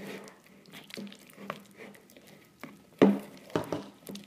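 A spoon stirring and scraping thick glue slime in a plastic bowl, with small scattered clicks and a sharper knock about three seconds in.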